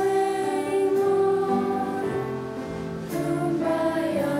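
A children's choir sings, holding a long note and then starting a new phrase about three seconds in.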